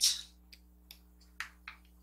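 Squeezing mud mask out of its small container by hand: a short hiss right at the start, then a few faint, scattered clicks and ticks of the packaging.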